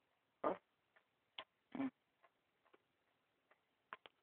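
A few faint, irregular clicks and small handling noises, the two loudest about half a second and just under two seconds in.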